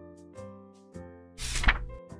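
Gentle background music with soft sustained notes, and a single page-turn rustle about a second and a half in, the loudest sound, lasting about half a second.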